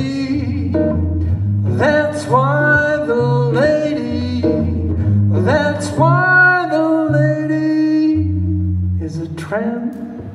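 A man singing a jazz standard to his own acoustic guitar. The voice drops out about eight and a half seconds in, leaving the guitar playing alone.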